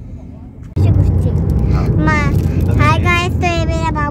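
Steady low road and engine rumble inside a moving car's cabin, jumping abruptly louder about a second in. From about two seconds a person's voice, wavering in pitch, is heard over it.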